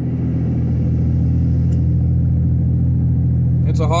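Steady engine and road drone heard from inside the cab of a 22-year-old Ford Ranger cruising at an even speed.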